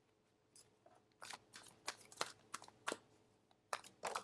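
Faint, sharp clicks and snaps of tarot cards being handled on a table, about a dozen in quick, irregular succession starting about a second in.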